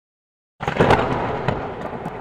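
A sudden, loud burst of crackling, rumbling noise from the film's soundtrack, starting sharply about half a second in from dead silence, loudest at first and then easing slightly.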